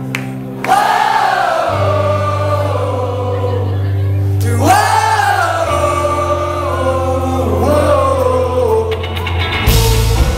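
Live indie folk-rock band with bass, guitars and keyboard playing a slow passage under long, held sung phrases, with many voices singing the chorus along. Just before the end the full band comes in with a loud crash.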